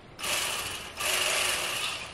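Bubba Li-Ion cordless electric fillet knife run with no load in two short bursts: its motor and reciprocating blade start, stop for an instant about a second in, then run again for just under a second.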